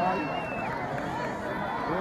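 Large outdoor crowd of onlookers, voices calling out to cheer on a pole climber. A high held note sounds over them until about half a second in.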